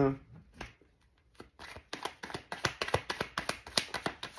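Deck of cards being shuffled by hand: a quick run of soft card snaps and flicks that starts about a second and a half in and grows denser toward the end.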